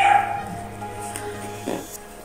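Injured young dog giving a short pained cry right at the start as its hurt leg is handled and bandaged. Soft background music with sustained notes plays throughout.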